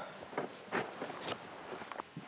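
Several soft footsteps in sneakers on carpet, irregularly spaced.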